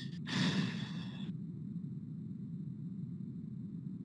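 A single breath-like rush of air into the microphone, lasting about a second near the start, then a steady low background hiss from the open microphone.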